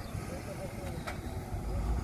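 Low rumble of a vehicle on the nearby road, growing louder near the end, with faint voices and one sharp click about halfway through.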